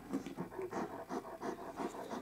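An Alaskan malamute panting softly, a quick run of short breaths.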